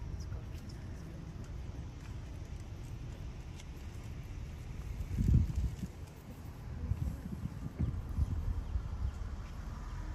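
Wind rumbling on the microphone, with a stronger gust about five seconds in and more gusts from about seven to nine seconds.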